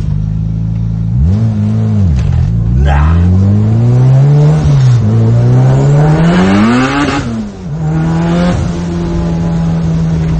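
Honda Civic EK9 Type R's four-cylinder VTEC engine heard from inside the cabin. After a short rev up and down, it accelerates hard twice, its pitch climbing and then dropping suddenly at each upshift, and settles to a steady note near the end.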